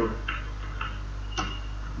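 Computer keyboard keys clicking as a few letters are typed: about four short clicks, the loudest about one and a half seconds in, over a steady low hum.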